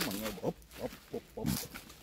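A person's voice: the end of a short spoken phrase, then a few brief, quieter vocal sounds.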